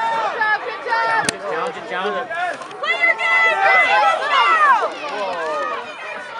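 Spectators shouting and calling out at a soccer match, several high voices overlapping, with one sharp knock about a second in.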